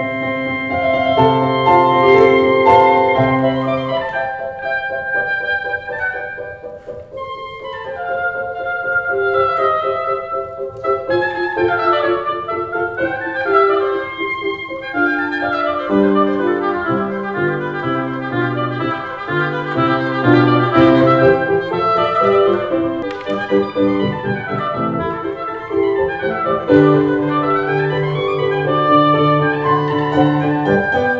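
Oboe playing a classical solo with piano accompaniment: held melodic notes, with quick running passages in the middle and again later.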